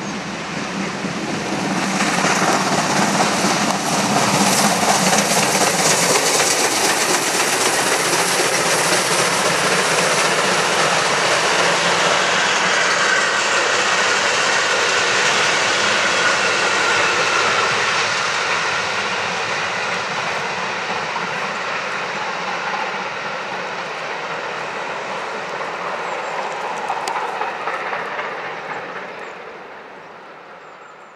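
Class 52 2-10-0 steam locomotive 52 1360-8 and its train of passenger coaches passing on the rails: a loud rush of noise that swells a couple of seconds in, stays loud while the locomotive and coaches roll by, then eases and fades out near the end as the train draws away.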